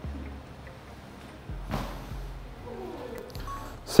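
A standing broad jump: the jumper's feet land once on gym turf, a single thud a little under two seconds in, over quiet room tone.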